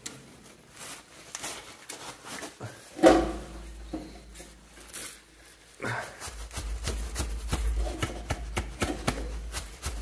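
Irregular metallic knocks, clicks and rubbing as the stiff decompression lever on an old Lister diesel engine is worked by hand. There is one louder clunk about three seconds in, and a low rumble with quicker clicking from about six seconds.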